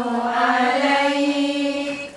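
A group of women chanting devotional verses together in unison, holding long drawn-out notes; the phrase fades out near the end.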